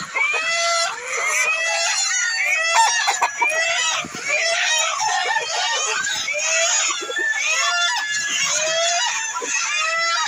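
A large flock of hens and roosters calling and clucking without a break, many short calls overlapping one another.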